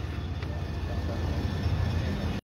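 Steady low rumble of street traffic at an intersection.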